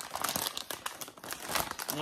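Plastic bag of individually sealed tilapia fillets crinkling and crackling irregularly as it is gripped and turned in the hands.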